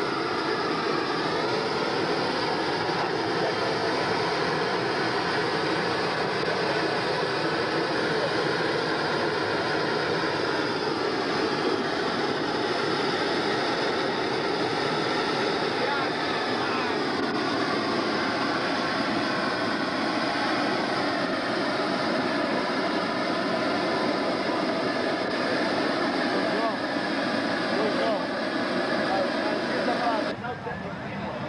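Flaming torch burning steadily, a continuous rushing noise, as it heats the air inside a large paper festival balloon during inflation. Voices can be heard faintly under it.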